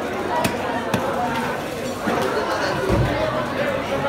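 Fish-market background of people talking, with a few sharp knocks early on and a dull thump about three seconds in, from a large tripletail being handled on a wooden cutting block.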